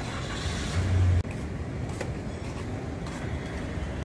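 Outdoor street traffic noise: a steady rumble of passing vehicles, with a brief low hum just before a second in.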